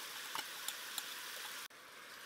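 Faint sizzling of pork and vegetables cooking in an enamelled cast-iron Dutch oven, with a few light ticks. The sound drops away abruptly near the end.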